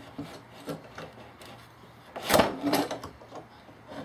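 A clamp being fitted into a slot cut in a wooden work table: low rubbing and handling noise, with one brief, louder scraping knock about halfway through.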